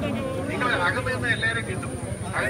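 A man speaking into a handheld microphone, in continuous speech over a steady low background noise.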